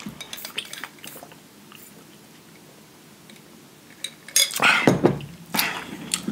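A metal fork clinking and scraping in a foil tray of food. There are light clicks at first, then two louder bursts of clatter near the end.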